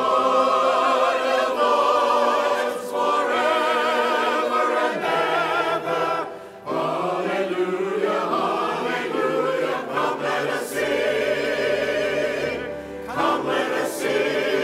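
Church choir singing in several voice parts, the sustained notes wavering with vibrato, with short breaks between phrases about six and a half seconds in and again near the end.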